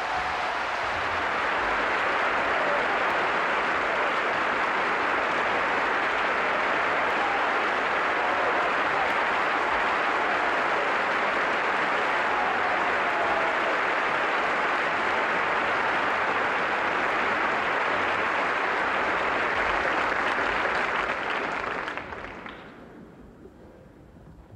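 Theatre audience applauding steadily for about twenty seconds, then dying away near the end.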